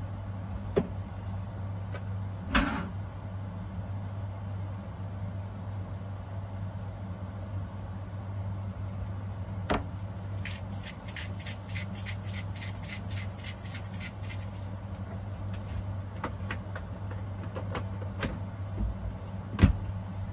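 Cooking sounds at a stovetop skillet of potatoes being seasoned and stirred: occasional clicks and knocks of utensils and containers, and a rapid run of ticks for about four seconds midway. All of this sits over a steady low hum.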